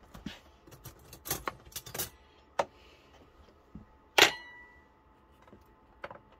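Kitchen utensils and crockery handled on a counter: a run of small knocks and clicks, then a single sharp, ringing clink about four seconds in.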